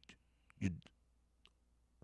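A man's voice saying a single word in a pause in his talk, with a few faint, short clicks around it.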